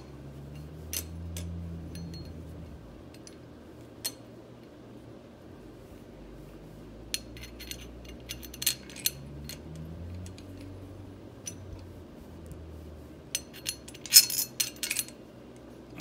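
Steel sprocket bolts and nuts clinking and tapping against the sprocket and hub as they are fitted on an ATV rear axle, in scattered single clicks with a quick run of rattling clinks near the end. A faint low hum sits underneath.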